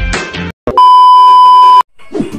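Intro music cuts off about half a second in, then a loud, steady electronic beep tone sounds for about a second and stops abruptly.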